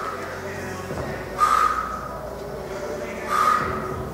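Athletic sneakers squeaking briefly on a rubber gym floor, about every two seconds, as the lunging foot plants and pushes off.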